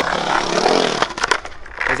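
Skateboard wheels rolling on a concrete bowl, with a few sharp clacks of the board about a second and a half in.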